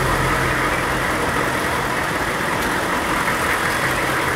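HUMMER H1's 6.5-litre turbo-diesel V8 idling steadily.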